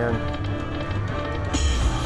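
Slot machine bonus-round music and chimes playing over a steady bass beat during the free spins, the sound growing fuller about one and a half seconds in.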